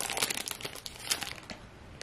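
Foil trading-card pack wrapper crinkling in the hands: a run of small crackles, thick at first and thinning out toward the end.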